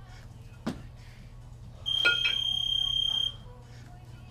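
A single electronic beep, one high steady tone held about a second and a half, starting about two seconds in. Around it come short metallic clinks of two 20 kg kettlebells knocking together during jerks: one about half a second in and two close together as the beep starts.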